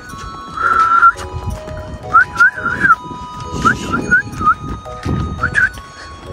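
Background music with a person whistling over it. There is one held whistle about half a second in, then several groups of three or four quick rising whistled chirps.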